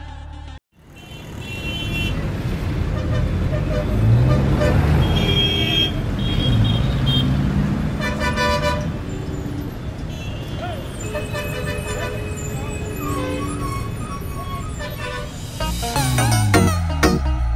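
A song cuts off abruptly less than a second in. Street traffic noise follows, with vehicle horns tooting several times.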